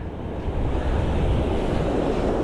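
Surf washing up the beach, with wind buffeting the microphone in a steady rumble.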